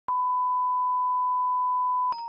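A single steady, pure electronic test tone, of the kind used as a broadcast line-up tone at the head of a programme tape. It starts with a small click right at the beginning and holds unbroken at one pitch and level.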